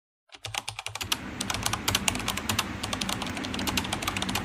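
Computer-keyboard typing sound effect: rapid key clicks, many a second, starting a moment in, over a faint steady hum.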